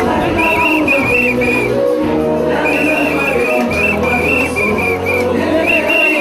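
Loud dance music with a steady bass line, over which a pea whistle is blown in runs of short, warbling trilled blasts in time with the music, pausing briefly about two seconds in.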